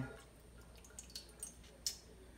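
Thick salsa pouring from a jar into a stainless-steel pot: a few faint plops and ticks, with one sharper click near the end.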